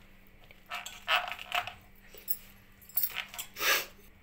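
Metal tongs clinking against a steel plate of boiled corn kernels: about five short, sharp clinks, the last one near the end the longest and loudest.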